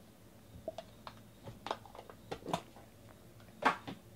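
Trading cards and their small cardboard box being handled on a table: a scatter of light taps and card clicks, then one louder knock near the end as the stack is put down.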